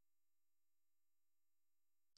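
Near silence: the narration's pause is gated to almost nothing, with no audible sound.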